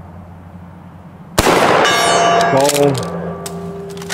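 A 12-gauge slug fired from an Ithaca Model 37 pump shotgun, sudden about a second and a half in. It is followed at once by a steel gong ringing on with several steady tones as the slug strikes it.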